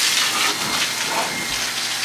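Water running steadily, an even rushing hiss like a hose or tap pouring.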